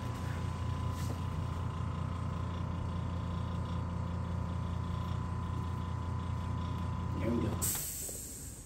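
Steady low machine hum with a faint high whine, cutting off abruptly shortly before the end.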